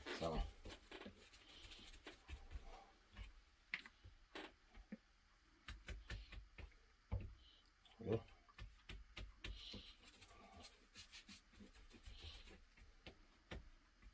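Faint, scattered light clicks, taps and short soft scrapes of hand work: a brush spreading water-based glue onto leather and a plastic glue squeeze bottle being handled.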